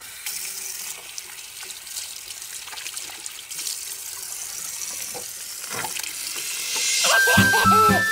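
Water running steadily from a bathroom tap into a ceramic washbasin, starting suddenly as the tap is turned on. Music with a melody comes in near the end.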